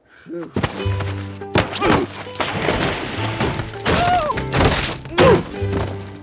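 Animated-cartoon soundtrack: music with a steady low bass note, broken by several sharp thuds and a few short sliding tones, starting after a brief moment of near-silence.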